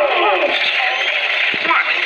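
Dialogue from a film soundtrack over continuous background sound, with a voice saying "Oh. What?" near the end.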